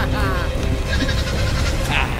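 Young goat kid bleating: one quavering cry at the start, over a steady low rumble.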